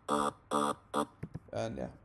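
An Ableton Operator synth preset playing a single low note over and over in short, buzzy, evenly spaced hits, three of them about half a second apart, stopping about a second in; a spoken "yeah" follows near the end.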